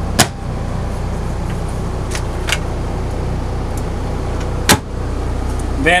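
Steady low machinery hum from the running motorhome. Over it, a sharp click sounds just after the start and another near the end, with a couple of fainter ticks between, from the mirrored medicine cabinet doors being handled.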